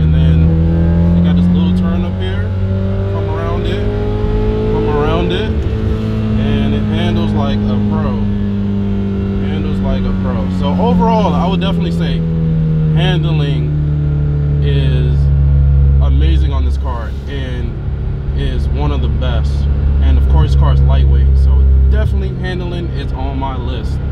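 Honda Civic Si's 2.0-litre K20 four-cylinder engine droning steadily while cruising, heard inside the cabin. Its pitch rises a little at first, then eases down slowly. A voice runs over it.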